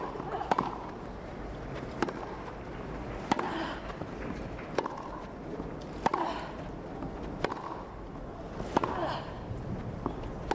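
Tennis rally: rackets striking the ball back and forth, a crisp hit about every second and a half, about seven in all. A player's short grunt comes with some of the shots, over a faint steady crowd hum.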